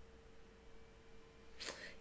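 Near silence: room tone with a faint steady hum, and a short soft sound near the end.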